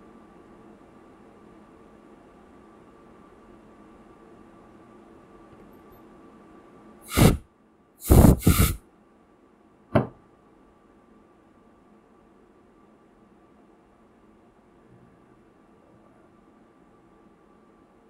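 Four short, loud bursts of rushing breath-like air noise: one about seven seconds in, two together a second later, and a brief one near ten seconds. Under them runs a steady faint hum with a thin high tone.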